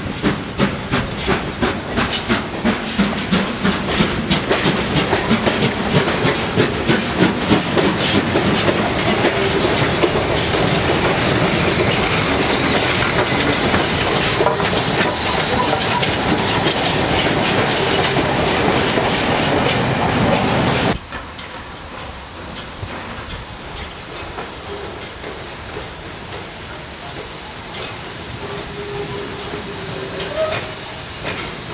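Railway coaches rolling past, their wheels clicking rhythmically over rail joints and points and growing louder. About two-thirds through, the sound cuts suddenly to a quieter steady hiss of steam from LMS Black 5 steam locomotive 45305.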